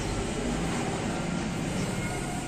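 Steady background rumble and noise, even throughout with no distinct events.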